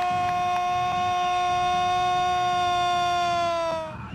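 A football commentator's long drawn-out goal shout, "Gooool", held as one loud sustained note that dips slightly in pitch and trails off just before the end.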